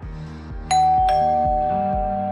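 A two-note ding-dong doorbell chime, a higher note then a lower one under half a second apart, both ringing on, over background music with a steady low beat.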